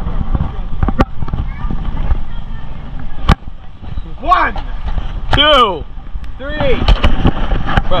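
Wind buffeting a GoPro microphone by a river. There are two sharp knocks in the first few seconds, and several short calls from people's voices from the middle of the stretch onward.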